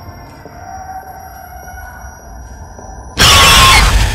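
Quiet, eerie drone with thin, steady high tones, then a little over three seconds in a sudden, very loud, harsh crash of noise: a horror-trailer jump-scare stinger.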